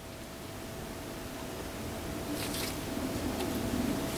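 Faint handling sounds of gloved hands pressing an oil-soaked foam ring into a suspension fork's lower leg, with a brief rustle about two and a half seconds in, over a steady low hum.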